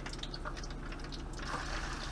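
Butter and cooking oil bubbling and sizzling in a frying pan, with faint crackles. The sizzle grows fuller about one and a half seconds in. The butter has melted, the sign that the oil is hot enough to fry.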